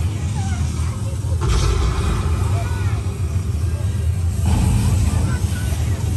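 Tour tram's engine running with a steady low rumble, and a sudden hiss that starts about a second and a half in and cuts off about three seconds later.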